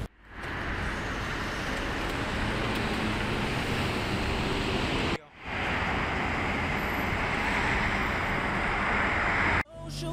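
Outdoor city street ambience with steady traffic noise, broken by two sudden brief drop-outs, about halfway through and just before the end.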